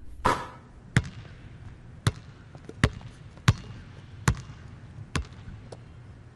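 A basketball being bounced slowly, about eight single bounces at uneven intervals of roughly a second, each a sharp slap with a low thud.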